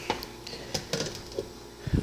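A few light knocks and clicks as a NutriBullet cup packed with frozen banana chunks is shaken and handled, with a low thump near the end.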